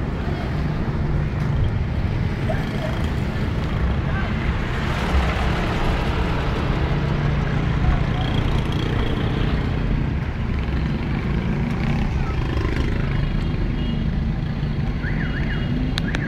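Steady engine and road noise of a car, heard from inside the cabin while it drives along.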